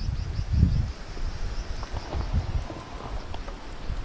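Wind rumbling on the microphone of a handheld camera, with a bump about half a second in and a faint run of high chirps in the first second.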